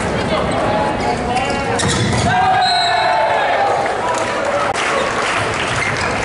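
Indoor volleyball rally in a large sports hall: the ball struck several times, shoes squeaking on the court, and players' voices calling out.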